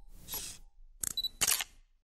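Logo-sting sound effect: a short whoosh, then a camera-shutter click in two parts about half a second apart.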